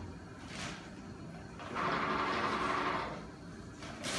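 Automatic paper towel dispenser's motor whirring for about a second and a half, starting a little before the middle, as it feeds out a length of paper towel.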